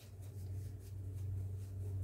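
A steady low hum with faint, light rustling over it.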